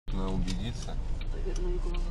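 A voice speaking briefly inside a moving car's cabin, over the steady low rumble of the engine and road.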